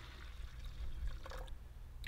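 Water poured from a plastic cup into a plastic measuring pitcher already partly full: a thin stream splashing into the water, faint.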